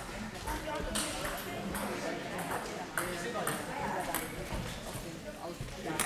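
Irregular sharp clicks of table tennis balls striking bats and tables from rallies around a sports hall, over a background murmur of voices.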